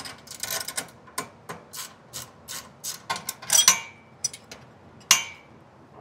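Metal clicks and clinks of a combination wrench working on a steering column, a quick run of small ticks with a louder burst of clatter about three and a half seconds in and one sharp knock near the end.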